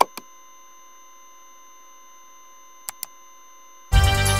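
A steady electronic tone made of several pitches held at once, like a dial tone, over a faint hiss. There is a soft click just after it starts and two quick clicks close together near the end.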